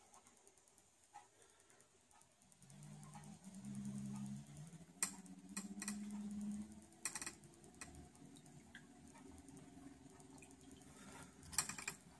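Small 12-volt electric trolling motor, run through a PWM speed controller, humming faintly from about two and a half seconds in. Its pitch steps up as the speed is slowly raised toward half power, then it runs on more steadily. A few light clicks come at the controller.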